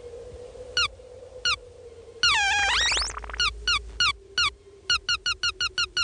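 Cartoon sound effect of a small bird chirping: two single high chirps, each falling in pitch, then a longer cry about two seconds in that dips and rises again, then a quick run of chirps that speeds up.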